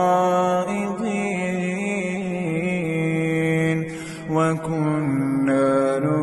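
A male reciter chanting the Quran in slow, melodic tajweed, drawing out long held notes with small ornamental turns. The voice breaks briefly about four seconds in, then carries on at a lower pitch.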